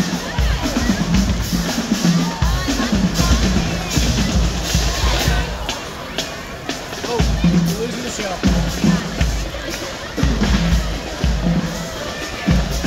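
A high school marching drum line playing, bass drums beating in rhythmic groups, under the chatter of a crowd with children's voices.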